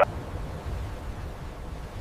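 Steady low rumble with a hiss of rushing water, a sound-effects bed of floodwater surging.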